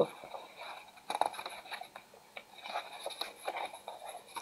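Faint rustling and light scraping of a paperback book's pages being handled and turned, in a few short scattered bursts.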